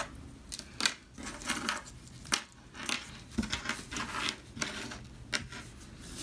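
Small DC motors being pulled apart by hand and set down on a plastic cutting mat: irregular light clicks, taps and rustles.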